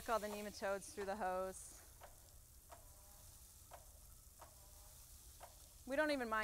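A woman's voice briefly at the start, then near silence with a few faint ticks.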